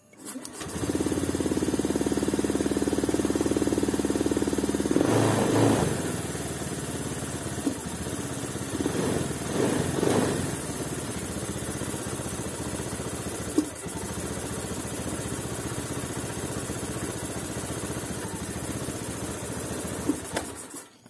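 Fuel-injected Honda Beat scooter's single-cylinder engine starting about half a second in and running at a high idle. Its speed rises briefly around five seconds and again around nine to ten seconds in, then it settles at a lower idle. The idle is unstable and almost stalling, a fault the mechanic links to a badly set idle air and throttle adjustment.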